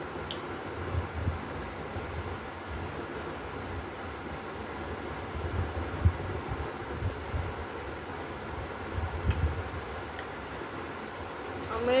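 A person biting into and chewing slices of raw green mango, with one sharp bite about halfway through and softer chewing sounds after it, over a steady background hiss.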